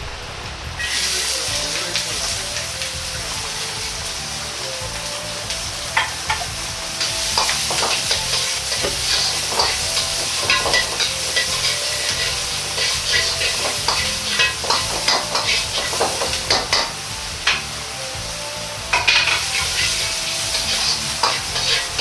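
Diced ginger, carrot and onion sizzling in hot oil in a Chinese wok, starting about a second in as they go into the pan. A metal ladle scrapes and taps against the wok throughout as they are stir-fried.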